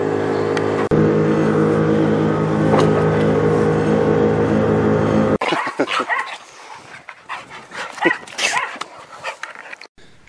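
A vehicle engine idling steadily, cut off abruptly about five seconds in; then dogs giving short, excited whines and barks.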